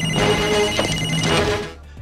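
An alarm ringing in steady high tones over a low rumble, stopping about a second and a half in.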